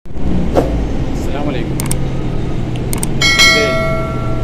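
City bus interior while riding: a steady low engine and road rumble with a few sharp clicks. About three seconds in, a bright electronic chime rings for about a second.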